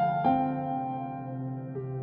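Gentle new-age background music: a piano-like note is struck a quarter-second in and rings out over a steady low pad, with a softer note change near the end.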